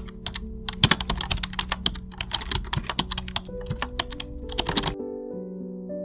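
Computer-keyboard typing sound effect: rapid, irregular key clicks for about five seconds that then stop suddenly. Soft background music with held notes plays underneath throughout.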